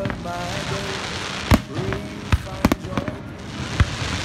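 Fireworks display: a dense crackling hiss of burning stars, broken by several sharp bangs of shells bursting, the loudest about one and a half seconds in and near the end.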